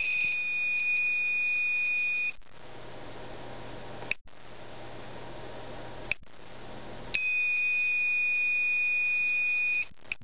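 Old-version Gamma Scout Geiger counter's beeper sounding a steady high-pitched tone for about two seconds, then two short chirps about two seconds apart, then a second steady tone of about two and a half seconds.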